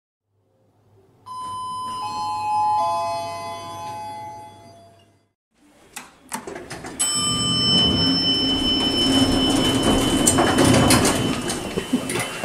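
A three-note descending chime rings and fades. After a short break come a couple of sharp clicks, then an elevator's doors sliding open, with a steady high whine over the running noise.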